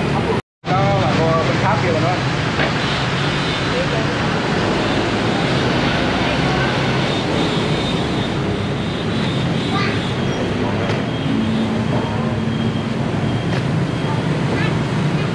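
Steady din of street traffic with voices talking in the background, broken by a short gap of silence about half a second in.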